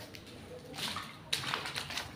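Quiet rainwater sounds: a low hiss of rain with two short splashes near the middle, sandalled feet stepping through standing water on wet paving.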